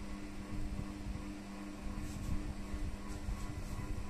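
Portable projector running while it plays a film: a steady hum with a low drone and a few faint hissy swells near the middle and end, from its cooling fan and its built-in speaker playing a space-scene soundtrack.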